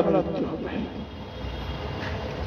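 A man's voice in a sermon trails off at the very start, leaving a steady low rumble of background noise through the pause.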